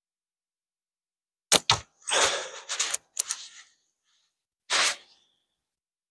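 A shot from a Prime Fork Cygnus Bold slingshot with flat yellow bands: two sharp snaps of the bands on release about one and a half seconds in, followed by about a second of noisy clatter with a few more sharp ticks, and another short noisy burst near the end.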